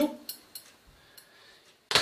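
A few faint handling ticks, then one sharp click near the end from metal surgical forceps being handled on the table.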